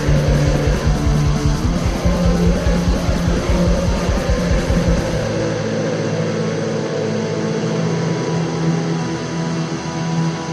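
Black metal demo recording: distorted electric guitars over fast drumming. About five seconds in, the drumming drops out and the guitar chords ring on.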